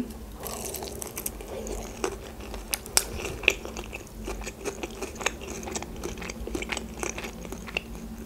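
Close-miked chewing of a sushi roll: wet mouth sounds with a run of many small crisp clicks and crunches.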